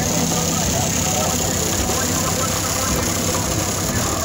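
Steady car-meet noise: a car engine idling with a low, even drone, under indistinct voices.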